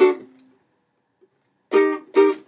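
Ukulele E-flat chord, barred at the first fret, ringing out and fading within about half a second after a strum, then a pause and another strum of the chord near the end.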